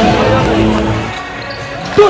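Arena music over the PA stops about a second in, leaving quieter hall sound, with a basketball bouncing on the court.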